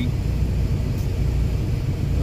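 Kenworth semi-truck's diesel engine idling, a steady low rumble heard inside the cab.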